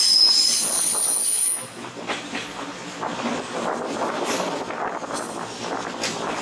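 Railcar wheels squealing on the rail, a high steady whistle that stops just under two seconds in, heard from the train's open-air deck. After it, the wheels run on with a noisy rumble and scattered knocks over the track.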